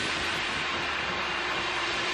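Racing boat's engine running at full speed as it passes at a distance, a steady noisy rush that slowly fades.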